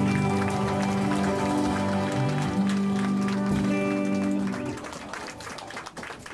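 Live rock band with electric guitars, bass, drums and harmonica holding the final chord at the end of a song. The music stops about three-quarters of the way through, and light scattered clapping follows.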